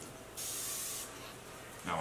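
One short spritz from a spray bottle misting water onto the hair, a hiss lasting about half a second.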